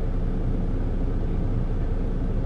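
Steady low rumble of an idling truck engine, heard from inside the sleeper cab.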